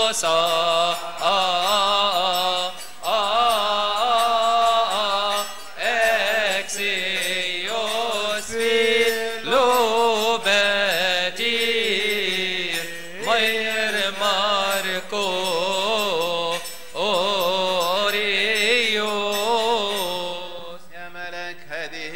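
A choir of Coptic Orthodox deacons, men and boys, chanting a liturgical hymn together in long, wavering melismatic lines, broken by a few brief pauses for breath.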